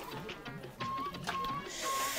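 Quiet background music with short repeated tones, and a brief whirring burst near the end.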